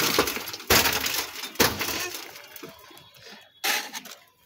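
Shovelfuls of earth and gravel thrown into a grave: four sudden gritty rushes about a second apart, each dying away.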